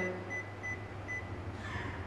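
Touch-control panel of an Elica EPBI WD 22L warming drawer giving a few short, high beeps, one per key press, as the timer is stepped down with the minus key.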